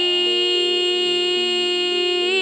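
Qawwali music: a single long note held steady over harmonium, with softer harmonium notes changing beneath it and no drumming.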